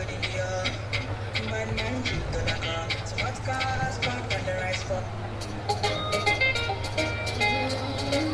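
Music playing, with a steady low hum underneath; a sharp percussive beat comes in strongly about five and a half seconds in.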